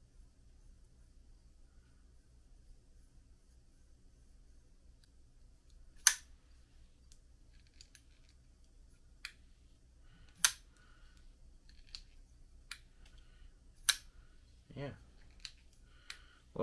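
CRKT Raikiri folding knife's blade being worked open and closed, giving sharp metal clicks as it locks and releases: three loud ones about 6, 10 and 14 seconds in, with fainter clicks between. The stiff pivot has just been given pivot lube and is starting to loosen.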